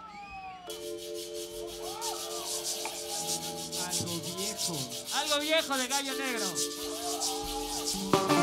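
A live rock band's lead-in to a song: a fast, steady scratchy percussion rhythm over a held keyboard chord, with sliding pitched tones that warble quickly past the middle. Near the end it breaks into full-band music.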